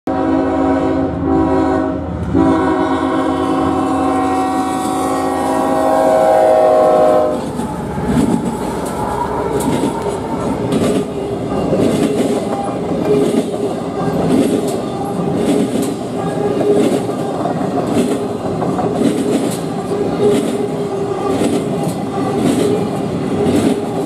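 The Nathan K5HL air horn of a GE ET44AH locomotive sounds three blasts, two short ones and then one held about five seconds. Then the train passes close by: steady rail rumble with regular clicks from the intermodal cars' wheels on the rail.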